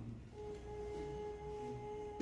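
A steady, unwavering high tone from the soundtrack of a laryngeal videostroboscopy video playing over the room's speakers. It starts about a third of a second in and holds one pitch.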